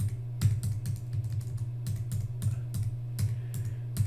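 Computer keyboard keys clicking in an irregular run of quick presses, over a steady low hum.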